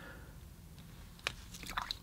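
Quiet room tone with a few faint mouth clicks, one about a second in and a few more near the end.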